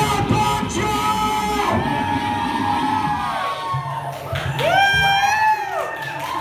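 Live performance music with long vocal cries that slide up and down in pitch. The strongest cry rises and falls about five seconds in.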